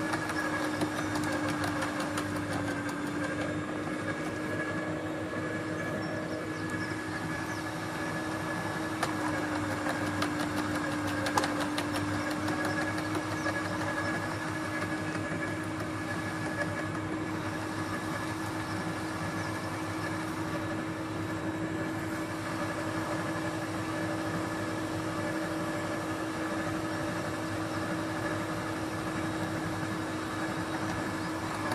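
Garden shredder running steadily with a held hum. Its pitch sags slightly a couple of times, and a few sharp cracks and snaps come near the middle.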